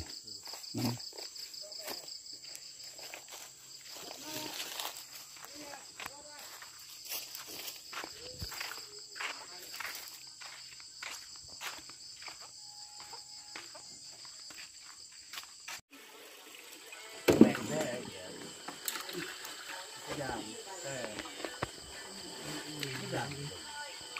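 A steady chorus of night insects, crickets, trilling high, with footsteps and scattered rustling and knocks as banana stalks are carried. The sound cuts off about sixteen seconds in, and people's voices follow.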